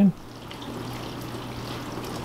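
KitchenAid KDTE234GPS0 dishwasher running with its newly replaced wash pump: water sloshing and spraying inside the closed tub, steady and even, over a low motor hum. It is quiet, a sign the new pump is working.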